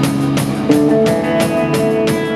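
Live rock band playing: electric guitar chords and electric bass over a drum kit beat, with drum and cymbal hits about four a second and a chord change under a second in.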